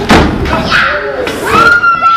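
A loud thud of a wrestler's body hitting the ring just after the start, followed by spectators shouting, with one long held shout near the end.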